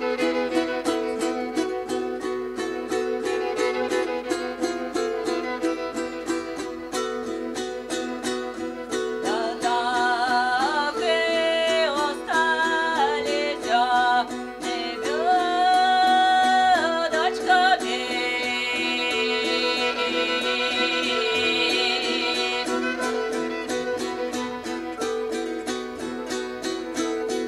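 Live acoustic folk-style music: strings plucked in fast, even strokes over a steady repeating chord pattern. About nine seconds in, a melody with held, sliding, wavering notes enters above it and carries on until a few seconds before the end.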